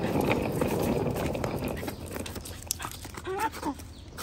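Wheels of a hard-shell roller suitcase rumbling over rough, cracked concrete, easing off about halfway through. Near the end a dog gives a brief excited whine of greeting.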